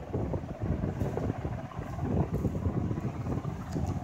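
Low, uneven rumbling noise on a phone microphone, like wind or handling noise, with no speech.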